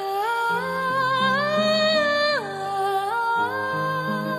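A high male voice singing a wordless vocalise over grand piano accompaniment, sustained notes climbing to a long held high note and then falling back.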